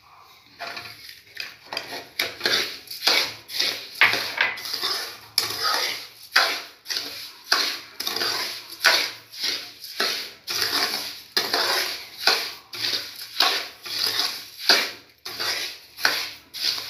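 Steel spoon scraping and stirring semolina (sooji) around a steel kadai, in quick rhythmic strokes about twice a second, starting about half a second in.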